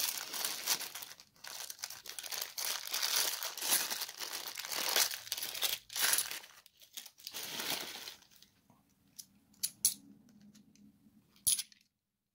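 A thin clear plastic coin bag crinkling and rustling as it is handled and opened, for about eight seconds. After that, a few light clicks, like coins being handled, near the end.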